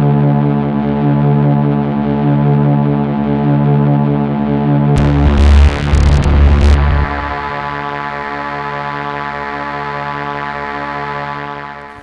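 Sustained synthesizer drone, one dark chord held steadily, added as a suspense effect. About five seconds in, a loud burst of static-like glitch noise with a deep rumble cuts across it for roughly two seconds.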